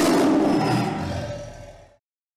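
Lion roar sound effect, loud at the start and fading away over about two seconds.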